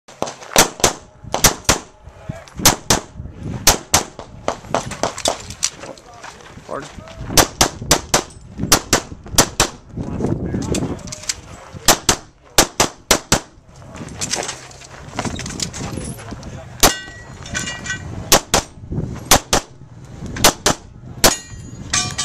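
Rapid pistol fire: dozens of shots, mostly in quick pairs, in strings with short pauses between them. A metallic ringing note sounds among the shots about three-quarters of the way through.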